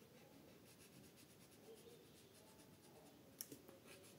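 Faint scratching of an orange crayon rubbed back and forth on paper, several short strokes a second. A sharp click about three and a half seconds in, followed by a couple of softer ones.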